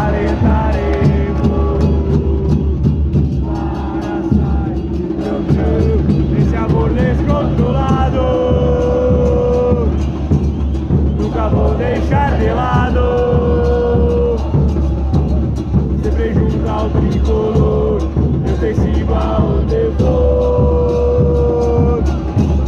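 Football supporters singing a chant together in long held notes, with drums beating steadily underneath.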